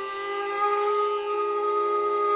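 Hotchiku, an end-blown Japanese bamboo flute, holding one long steady note.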